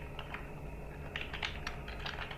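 Computer keyboard typing: a few scattered keystrokes, then a quick run of keystrokes about a second in, over a steady low hum.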